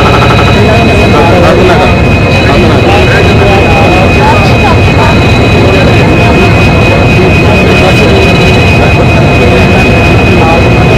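Diesel locomotive engine running close by, a loud steady drone with a constant high whine over it, and people's voices mixed in.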